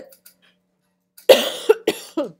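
A person coughing twice: after about a second of quiet, a harsh cough about a second and a quarter in, then a second, shorter cough just before the end.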